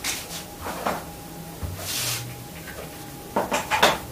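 Whiteboard marker sounds: light taps and a scratchy stroke of a marker on the board, then a few sharper plastic clacks near the end as a marker is handled at the board's tray.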